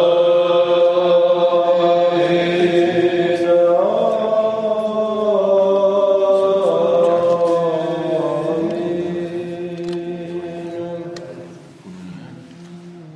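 Orthodox church chant sung by voices in long-held notes over a steady low drone. The melody steps up about four seconds in, then down again, and the singing fades out near the end.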